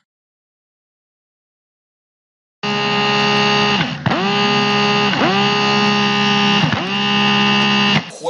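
Dead silence, then about two and a half seconds in a loud, steady electronic buzz with many overtones starts up and holds, its pitch dipping briefly three times.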